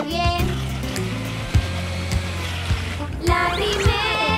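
A steady rushing cartoon sound effect of lemonade being made, lasting about two and a half seconds, over children's background music with a steady bass line.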